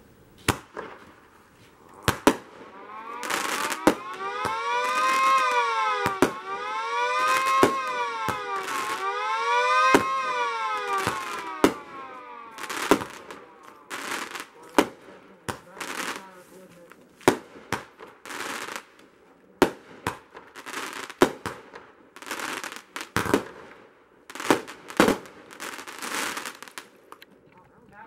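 A miniature model of a Federal Signal 2T22 two-tone siren winding up about three seconds in, wailing up and down about three times in quick cycles, then winding down. Fireworks crack and bang sharply and irregularly before, during and after it.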